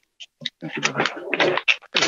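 A man's breathy, halting vocal sounds with no clear words, a hesitation in the middle of a sentence, beginning about half a second in after a brief silence.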